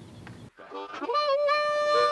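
Harmonica starting about half a second in: a few quick notes, then a held reedy chord that grows louder.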